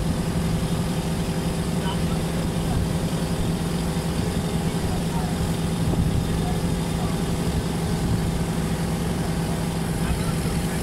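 Water bus engine running steadily as the boat cruises, a constant low drone that does not change in pitch or level.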